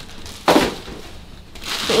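Thin plastic shopping bags rustling and crinkling as they are grabbed and pulled open, with one louder crackle about half a second in that dies away.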